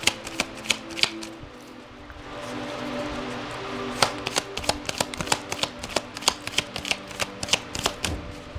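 A tarot deck being shuffled by hand: a quick, uneven run of card clicks and slaps, with a soft rushing swell of sliding cards in the middle. Faint background music with held tones plays under it.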